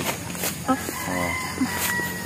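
A rooster crowing: one long, steady call held for about a second and a half, starting under a second in.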